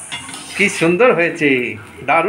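Metal spatula scraping and clinking against a black iron kadai as a rolled patishapta crepe is turned in it, with a voice heard over it from about half a second in.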